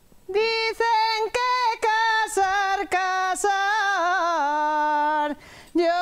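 A woman singing a traditional folk song alone, with no instrument heard, in long sustained notes. She pauses for a breath shortly before the end and then goes on.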